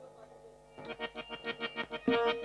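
Harmonium being played: faint held reed notes, then from about a second in a fast run of repeated notes, about seven or eight a second, getting louder.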